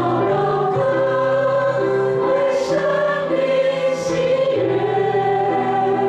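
A small church worship group sings a hymn in Mandarin in held, sustained notes, with acoustic guitar and piano accompaniment.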